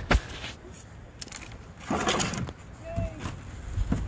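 Handfuls of dry peat-moss potting soil dropped into a small glass jar, rustling and crunching, with a sharp knock at the start and a second crunchy burst about two seconds in.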